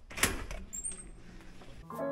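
Digital keypad door lock being worked: a sharp click about a quarter second in, rattling handling noise, and short high electronic beeps just under a second in.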